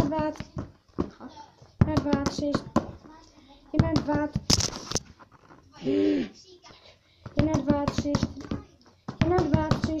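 Mostly a girl's voice repeating counting words in short sing-song phrases, with quick knocks between them, in a small room.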